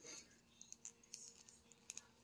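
Near silence with a few faint, scattered clicks of hard plastic: a posable action figure being handled as its loose leg is pushed back into its hip joint.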